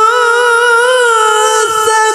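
Male Quran reciter (qari) holding a long, high melodic note in tilawah recitation. The pitch wavers in small ornamental turns, with a brief break near the end.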